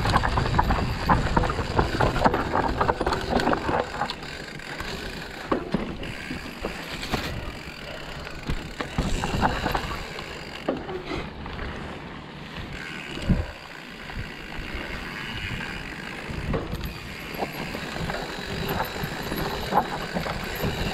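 Mountain bike ridden down a rough dirt trail: tyres on dirt and the bike's chain and frame rattling over bumps. Loud and rattly for the first few seconds, quieter on smoother ground through the middle, rattly again near the end.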